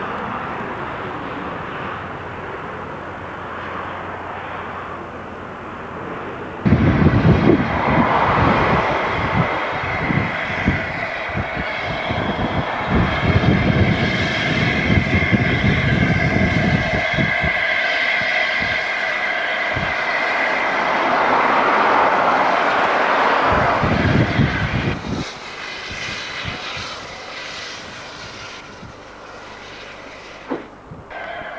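LNER A4 steam locomotive 60009 working a train. A steady distant sound gives way suddenly, about seven seconds in, to the loud close passage of the engine with rapid exhaust beats and a sustained high ringing tone over them. The sound drops away in the last few seconds.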